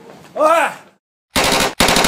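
A man's short cry about half a second in, then, after a moment of dead silence, two loud back-to-back bursts of rapid machine-gun-like fire, each under half a second long.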